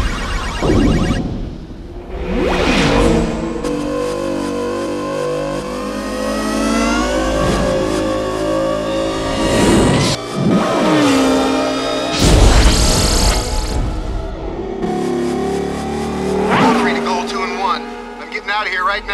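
Electronic film score with sci-fi light cycle sound effects over it: several swooping pass-bys of the cycles, and crash hits as a cycle smashes into a light wall and breaks apart.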